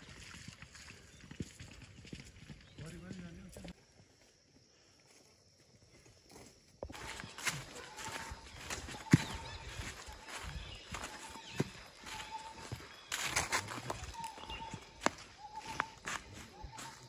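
Footsteps crunching on dry fallen leaves, with a bird repeating a short note over and over in the background. Both start about seven seconds in, after a few seconds of near silence.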